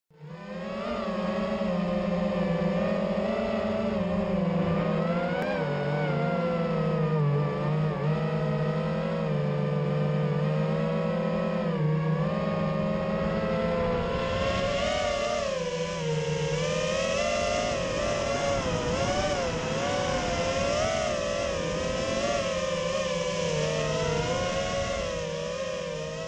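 Brushless motors and propellers of a modified Eachine Wizard X220 FPV racing quadcopter whining in flight, several tones rising and falling together as the throttle changes. A high hiss joins in about halfway through, and the sound fades near the end.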